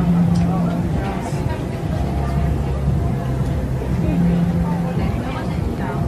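Indistinct voices over a steady low hum, with a few light clinks of cutlery on a plate.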